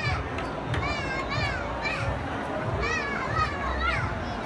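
Young children playing, with repeated high-pitched calls and squeals, over a steady background babble of a busy indoor space.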